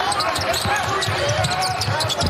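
Basketball dribbled on a hardwood court, about three or four bounces a second, with sneakers squeaking on the floor in short gliding chirps.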